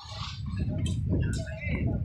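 Voices at a construction site over a low, irregular rumble that sets in at the start and grows louder, with a couple of brief sharp clicks about a second in.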